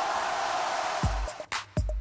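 Game-show style transition effect: a swell of hiss-like noise that fades out, then a few deep bass-drum thumps in the second half, coming out of a chiptune arcade jingle.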